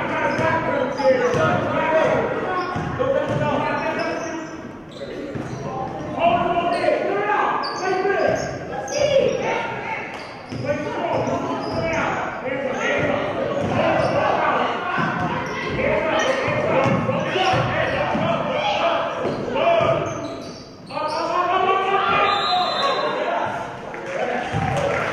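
Basketball game in a gym: the ball dribbling on the hardwood floor amid shouting voices from players and spectators, echoing in the large hall.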